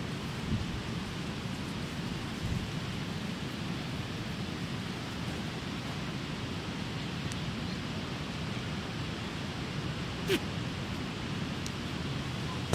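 Steady outdoor background hiss with no distinct source, and one short click about ten seconds in.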